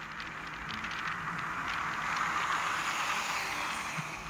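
Road and tyre noise from inside a moving car, a steady hiss that swells toward the middle and eases off near the end as another vehicle draws close alongside.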